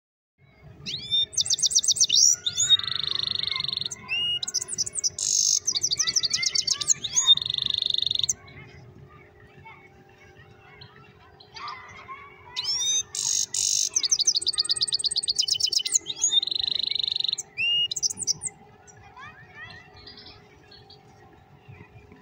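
A caged songbird singing two long bouts of canary-style song, rapid high trills alternating with buzzy held notes, with a pause of a few seconds between the bouts and a few faint chirps near the end.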